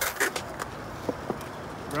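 Skateboard wheels rolling on smooth concrete after a switch flip landing, with a few light clicks.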